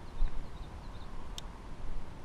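Wind buffeting the microphone with an uneven low rumble that gusts just after the start, faint high chirps of birds, and a single sharp click about one and a half seconds in.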